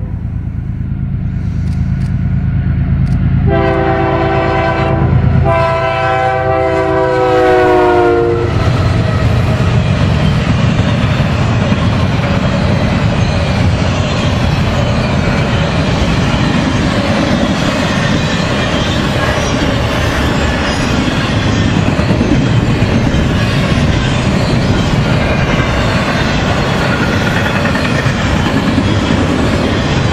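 Diesel locomotive air horn sounding a chord of several tones: the tail of one blast right at the start, then a long blast from about three and a half to eight seconds in whose pitch drops as the lead BNSF locomotive passes. After it, the steady rumble and clickety-clack of a double-stack intermodal train's well cars rolling past.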